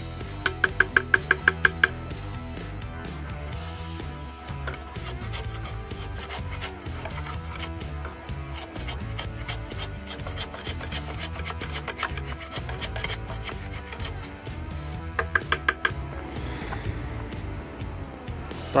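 A screwdriver scraping and knocking caked carbon out of a diesel EGR pipe, the soot buildup that clogs it, over background music. A quick run of about eight sharp ringing taps comes about half a second in, and a shorter run near the end.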